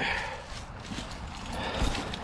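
Soft handling noises as a person climbs into an old car's front seat through the open driver's door: rustling with a few faint knocks.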